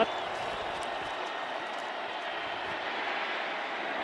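Steady noise of a large stadium crowd at a football game, heard through a TV broadcast.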